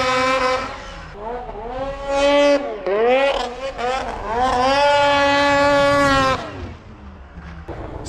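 Arctic Cat 800 two-stroke snowmobile engine revving hard in several bursts as the sled rides off through fresh snow. The pitch climbs and holds high, then dips between bursts. The longest burst is in the middle, and the engine falls away near the end.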